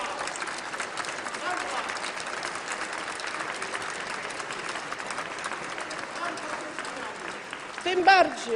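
Members of parliament applauding: many hands clapping densely, with scattered voices mixed in, easing off slightly near the end.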